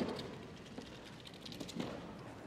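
Faint background of a large hall with light ticks and taps, and a soft knock at the start and another near the end.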